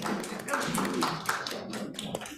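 Scattered, irregular taps and knocks of music folders and books being set down on padded chairs, with people talking.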